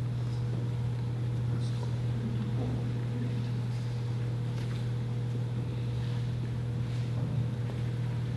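A steady low hum fills the hall, with a faint thin tone above it. A few soft footsteps or shuffles sound over it.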